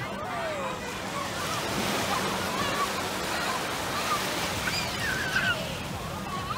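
Ocean surf washing over the shallows in a steady rush of water, with voices now and then in the background.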